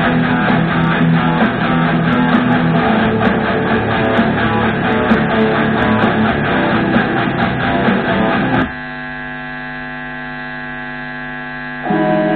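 Electric guitar through an amplifier, a dense sustained wash of sound that cuts off suddenly about nine seconds in. What remains is a steady electrical mains hum from the amp.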